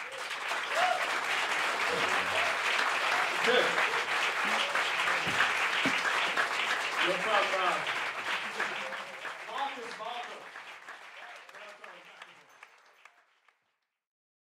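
Concert audience applauding with scattered shouts and cheers, the applause dying away over the last few seconds.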